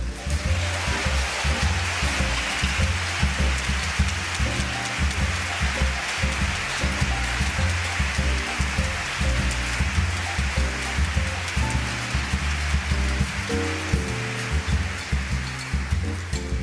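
Audience applauding throughout, over the orchestra playing a closing tune with a moving bass line.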